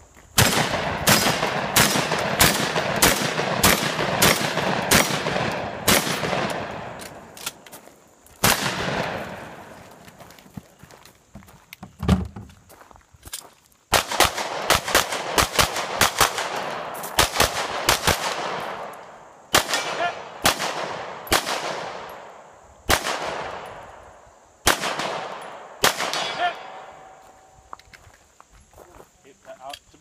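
Competition gunfire, starting with a shotgun: a fast string of shots about two a second, each with a fading echo. Then a few single shots, a short pause near the middle, another quick string, and spaced shots about a second and a half apart that stop a few seconds before the end.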